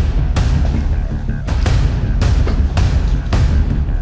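Tense dramatic background music, carried by deep, repeated drum hits.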